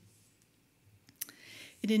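A pause in a woman's reading: near silence, then a single short click a little over a second in and a faint breath, before her speaking voice resumes near the end.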